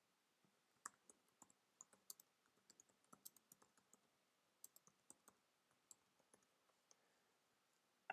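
Faint computer keyboard typing: irregular key clicks with a short pause about four seconds in.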